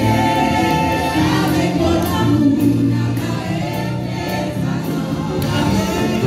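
Live gospel music: a group of voices singing together over a band, with percussion hits running through it.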